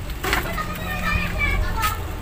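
Children's voices in the background, high-pitched talking and calling as they play.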